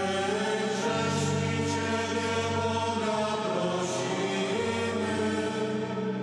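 A mixed choir singing a slow Polish passion hymn in long, held notes, the chords shifting every second or two.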